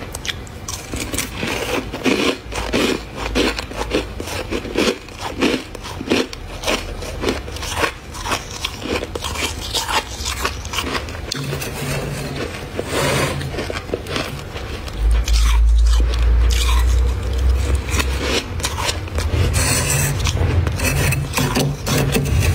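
Thick freezer frost being scraped and crunched with a metal spoon and a small wooden-handled blade, in quick repeated strokes. A low rumble comes in for a couple of seconds about two-thirds of the way through.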